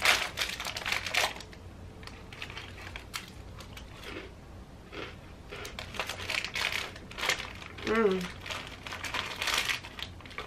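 Plastic wrapper of a packet of vanilla cookies crinkling as it is opened and handled, in a burst at the start and again near the end, with scattered faint rustles between.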